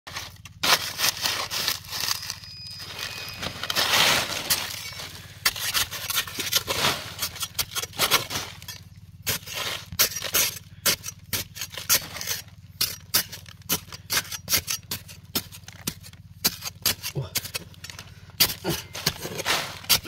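Metal digging blade scraping and chipping into a dry, crumbly clay bank, with irregular sharp scrapes and knocks and loosened clods crumbling down.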